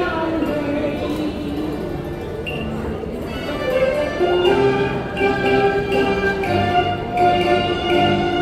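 Cantonese opera duet music with live accompaniment led by bowed strings. A gliding sung line in the first seconds gives way to a louder instrumental passage of held notes from about halfway through.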